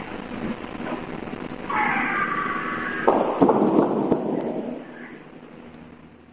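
An animal's high, wavering scream for about a second and a half, then a harsh, noisy burst with sharp cracks, about three seconds in, that fades off. The sound is heard by many as a woman screaming and then gunshots; hunters take it for a bobcat.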